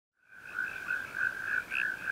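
Frogs calling: a steady, high-pitched chirping chorus that pulses about three times a second, starting a moment in.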